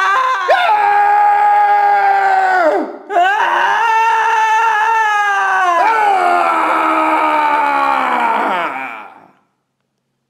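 A man and a woman screaming at each other in long, sustained screams, with a brief break for breath about three seconds in. Near the end the screams slide down in pitch and die away.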